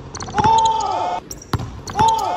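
Basketball dribbled on a hardwood gym floor, with two sharp bounces near the end, and basketball shoes squeaking on the floor in a long squeal about half a second in.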